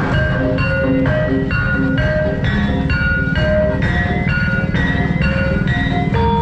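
Javanese gamelan-style music: tuned mallet percussion playing a steady run of short, ringing notes over a dense low rumble.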